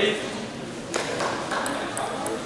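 Celluloid-type table tennis ball bounced several times on the table, short high clicks starting about a second in, over crowd chatter. A burst of applause ends at the very start.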